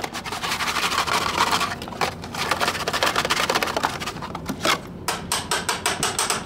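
Rapid clattering and knocking of a Toyota Corolla's metal idle air control valve being shaken and knocked in a plastic tub of gasoline, done to knock carbon debris loose and free the sticking valve. A few separate, sharper knocks come near the end.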